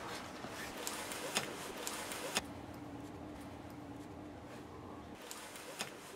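Quiet room noise with a few short sharp clicks in the first half and a faint steady hum through the middle.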